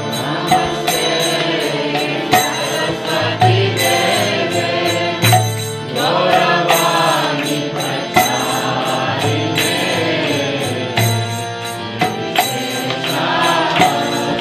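A man singing a devotional chant to his own harmonium, its held chords steady under the gliding voice. Small hand cymbals click in time, and a drum beats low every second or so.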